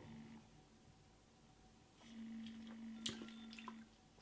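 Near silence: room tone. About halfway through a faint steady low hum comes in, with a few soft clicks.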